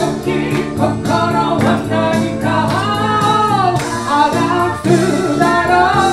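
Small live band: a woman sings a melody through a handheld microphone over electric bass and keyboard, with a steady beat underneath. Near the middle she holds a long, wavering note.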